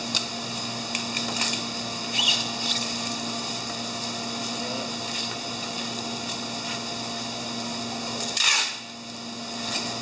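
Hand packing of shipping boxes: scattered knocks and rustles of cardboard, styrofoam and plastic, with one short, louder scraping burst near the end. A steady mechanical hum runs underneath throughout.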